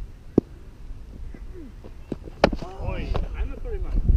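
A cricket ball being struck: a light sharp knock about half a second in, then a loud hard knock about two and a half seconds in. A few short shouted calls from players follow.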